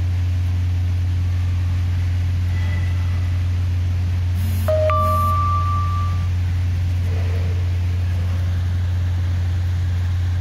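A loud, steady low-pitched hum. About four and a half seconds in, a brief higher tone sounds and holds for about a second.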